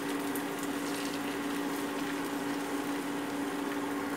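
Egg omelette frying in oil in a metal karahi on an induction cooktop: a steady sizzle over the cooktop's constant hum, with a metal spoon scraping the pan now and then.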